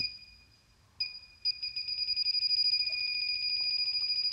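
Handheld electronic gas leak detector sounding a high-pitched tone. After a brief blip it turns, about a second and a half in, into a rapid, fast-pulsing beep that keeps going. On this detector a faster beep rate is the sign of a leak: it is picking up gas at a gas-train joint.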